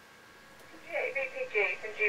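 A voice coming in over a ham radio transceiver's loudspeaker, narrow and telephone-like, starting about a second in after faint receiver hiss: another station calling on the talkback frequency.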